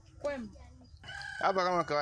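A rooster crowing once, one long call beginning about one and a half seconds in.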